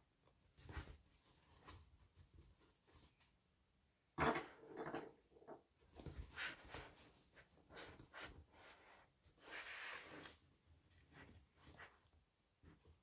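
Faint rustling and soft knocks of fabric, a zip and plastic sewing clips being handled on a bag, with one sharper knock about four seconds in and a longer rustle near ten seconds.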